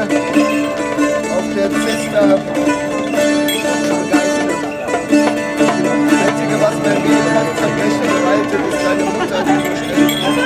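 Live medieval-style folk music: a cittern plucked over a steady drone, with a bowed nyckelharpa.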